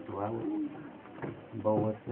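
A voice praying aloud in Swahili in two short phrases, with a pause between them.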